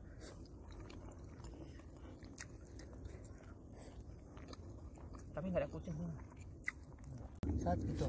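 Quiet chewing and small eating sounds as food is eaten by hand, with scattered faint clicks and a short hummed "mm" about five and a half seconds in.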